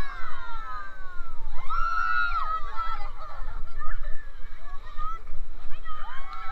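Raft riders shrieking and whooping in several high, gliding cries, in bursts near the start, about one and a half to three seconds in, and again at the end, over the low rush of churning rapids water.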